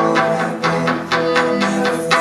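Live band playing an instrumental passage of a rock song on bass guitar and electric guitars, with a steady strummed beat about three strokes a second.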